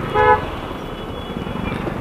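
A short vehicle horn toot, about a quarter second long, just after the start. It sounds over the steady engine and road noise of a motorcycle riding in slow town traffic.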